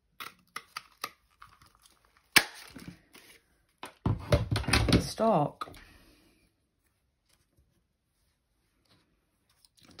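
A handheld craft paper punch clunks once through green cardstock about two and a half seconds in, amid small clicks and paper rustling. A louder stretch of paper handling follows around four to five seconds in.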